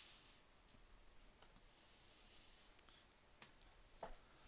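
Near silence: room tone with two faint clicks, a weaker one about one and a half seconds in and a clearer one about three and a half seconds in, from computer input during code editing.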